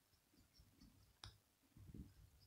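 Near silence: faint rustling and soft low bumps of a hand stroking a cat's fur on a cushion, with one sharp click about a second in.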